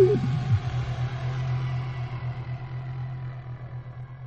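Closing seconds of an electronic techno track: a falling pitched sound ends about half a second in, leaving a steady low synth drone that slowly fades out.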